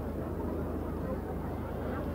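A pause in amplified speech: a steady low hum under faint background noise.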